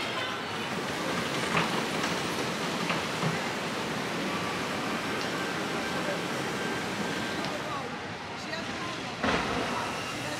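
Steady rush of water flowing along a log flume's channel, with a brief louder burst near the end.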